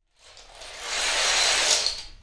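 Two long rows of dominoes toppling in a chain reaction on a wooden floor: a dense, rapid clatter that builds through the first second, is loudest near the end, and then dies away.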